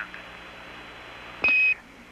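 A single short, high beep, about a third of a second long, comes about one and a half seconds in over the steady hiss of the air-to-ground radio line. It is a NASA Quindar tone, the signal that the ground has keyed its transmitter to talk to Skylab.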